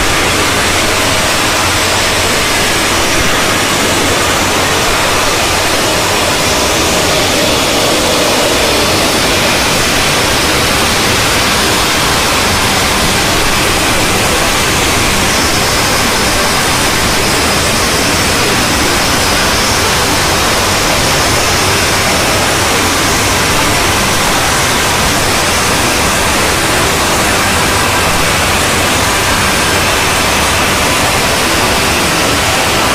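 Dozens of cartoon intro soundtracks playing over one another at once, piling up into a loud, steady hiss-like wall of static with no tune or words standing out.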